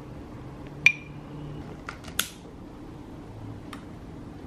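A long-neck utility lighter being clicked to light candles in glass jars: about four sharp clicks, the first and loudest with a brief ring.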